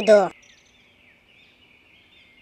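A voice speaking stops a moment in, leaving a faint, steady high hiss with small faint chirps in it: outdoor background ambience.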